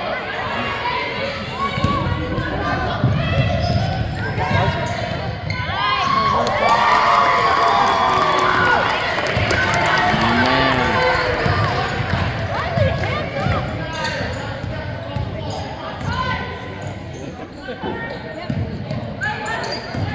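Basketball being dribbled on a hardwood gym floor, its bounces echoing in a large gymnasium, under the continuous voices and shouts of players and spectators, which grow busier in the middle.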